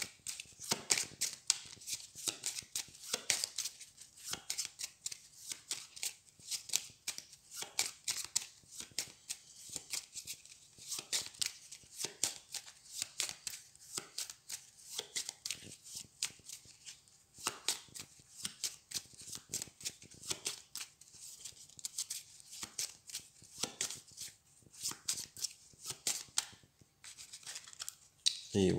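A deck of game cards being shuffled by hand: a steady run of quick, crisp card clicks and slaps, several a second, stopping shortly before the end.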